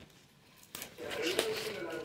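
Near silence for under a second, then a short click and a woman's quiet voice from about a second in.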